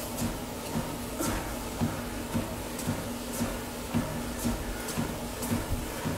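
Cardio exercise machine running steadily, with a low hum and a faint tick about once a second.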